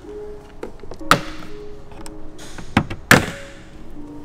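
Plastic clips of a Honda Civic hatchback's tailgate trim panel snapping loose as the panel is pried off with a plastic gasket tool: two sharp snaps, about a second in and about three seconds in, with a few lighter clicks between. Background music with steady tones runs underneath.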